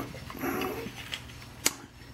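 Faint handling noise of a plastic model car interior tub being lifted and turned in the hands, with one sharp click about one and a half seconds in.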